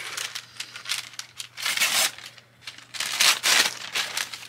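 Patterned gift-wrapping paper being torn and crinkled off a small present by hand, in several rustling spells. The loudest come about two seconds in and again between three and three and a half seconds.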